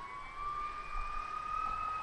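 A faint siren wailing, its pitch rising slowly.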